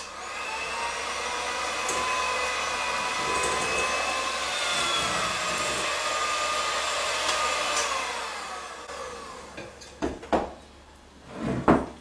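Electric hand mixer running steadily, its beaters whisking cake batter in a glass bowl; about eight seconds in the motor's whine falls in pitch and winds down to a stop. A few short knocks follow near the end.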